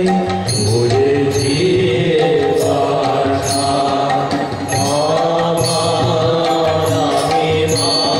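Bengali devotional kirtan to Kali: a monk sings a melodic chant over sustained harmonium chords and violin, with light percussion strikes ringing about once a second.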